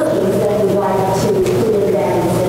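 Voices singing with long held notes that glide from one pitch to the next.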